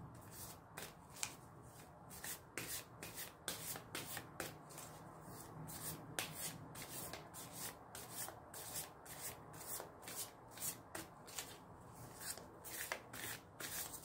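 Quiet overhand shuffling of a tarot deck: cards slid from hand to hand in quick, soft swishes, about two to three a second.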